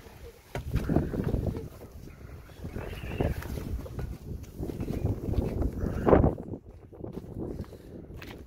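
Phone microphone rubbing and bumping against a quilted jacket while someone climbs down a tractor's metal cab steps, with a louder thump about six seconds in.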